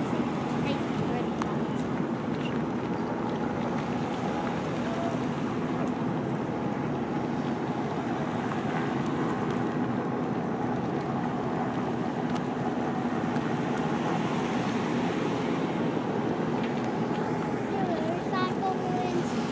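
Vehicles driving slowly past one after another in a long line, a steady hum of engines and tyres on the road.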